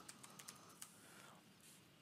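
A few faint computer keyboard keystrokes in the first second, otherwise near silence.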